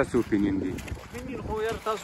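A man speaking, with a short pause about a second in.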